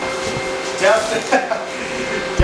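A man laughs briefly over a steady machine hum that starts suddenly, with a few constant pitched tones in it.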